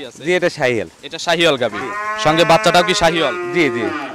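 Cattle mooing: a few short calls in the first second, then one long drawn-out moo lasting about three seconds.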